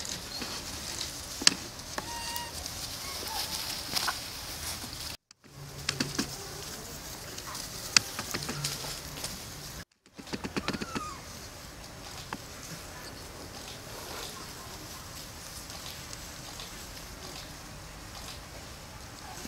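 Young long-tailed macaques scuffling on grass, giving a few brief squeaks (one rising near the middle) over a steady insect hiss with scattered clicks and rustles. The sound cuts out briefly twice.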